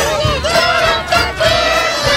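Several puppet songs playing over each other at once: many voices singing and calling together over backing music, a jumbled mix.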